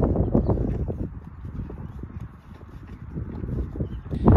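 A horse eating feed from a rubber bowl at close range: irregular crunching and chewing, loudest in the first second, easing off through the middle and picking up again near the end.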